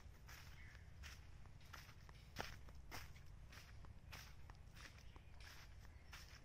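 Faint footsteps on dry bamboo leaf litter, about two steps a second, with one sharper crack about two and a half seconds in.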